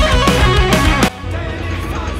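Live rock band with electric guitars playing, cutting off suddenly about halfway through to a quieter background.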